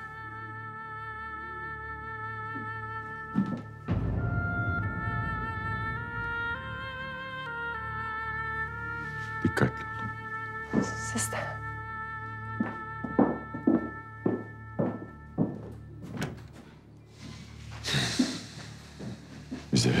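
Background score of slow sustained held notes that change pitch a few times, with scattered short dull knocks through the middle and later part.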